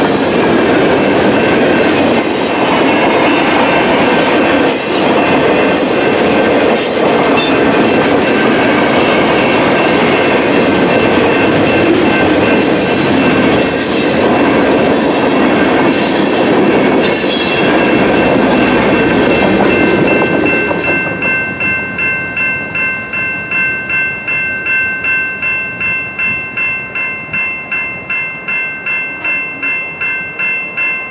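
Freight cars rolling through a grade crossing, wheels clattering over the rails with repeated brief high squeals, until the last car clears about two-thirds of the way in. After that the crossing bell is heard on its own, ringing about twice a second.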